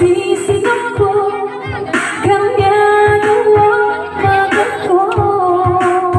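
A woman sings live into a microphone, holding long notes with bends in pitch. Electronic keyboard accompaniment with a steady drum beat backs her.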